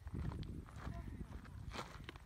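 Wind buffeting a phone microphone: an uneven low rumble, with a couple of faint ticks.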